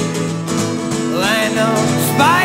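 Acoustic guitar strummed live over sustained tones from a small chamber ensemble of strings and winds. A melody line rises in about a second in.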